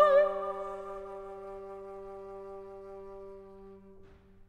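Close of a chamber art song: the singer's last note, sung with vibrato, ends just after the start, and the instruments hold a soft final chord that slowly fades out near the end.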